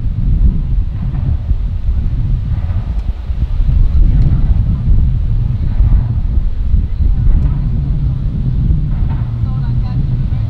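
Wind rumbling on the microphone, with faint distant voices from the boats over the water.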